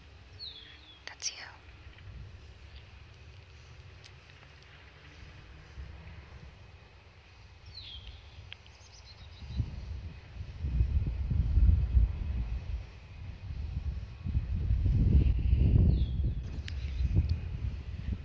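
Wind buffeting the microphone in gusts of low rumble, starting about halfway through and growing louder. A few short, falling bird chirps come through, one early, one near the middle and one near the end.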